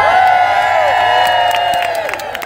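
A large crowd cheering and whooping together, many voices at once, with clapping starting near the end.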